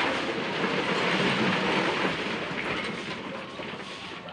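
A bucketful of wet concrete mix with gravel tipped into a column form and rushing and rattling down inside it. It starts suddenly and dies away after about three seconds.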